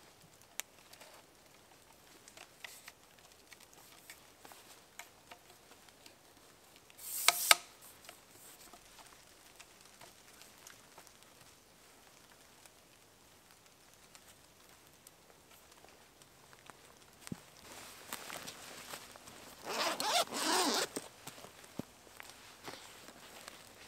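Zipper of a camera backpack being zipped: one short, quick zip about seven seconds in, and a longer, ragged zip near the end. Faint clicks of gear being handled in between.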